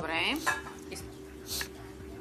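A ceramic bowl knocking softly twice against the rim of a glass mixing bowl as beaten eggs are poured out of it, over a steady low hum. A brief bit of a voice opens it.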